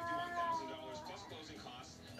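A toddler singing to her baby doll: one long held note for about a second at the start, then trailing off into softer sounds.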